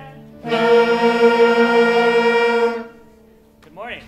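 Jazz band of saxophones, trumpets and trombones sounding one loud held note together, steady in pitch, which cuts off about three seconds in. A short voice sound follows near the end.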